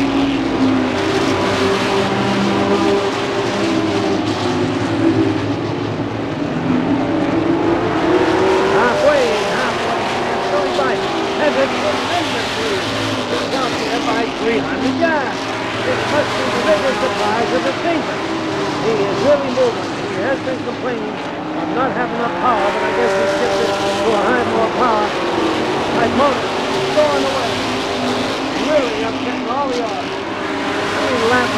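A pack of stock cars racing on a short oval, their engines running hard, with engine pitch rising and falling as cars pass and the field goes into and out of the turns.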